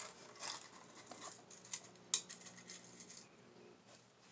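Small metal tin being opened by hand: faint scattered clicks and scrapes of the lid, with the metal paper clips inside clinking, and one sharper click about two seconds in.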